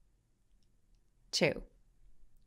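Near silence, then a woman says a single short word, the number "two", about a second and a half in.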